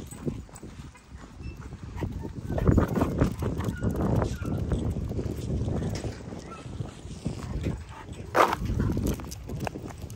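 Footsteps on a gravel path, an irregular run of crunching steps over a low rumble of handling on the phone's microphone. A short voice-like sound comes about eight and a half seconds in.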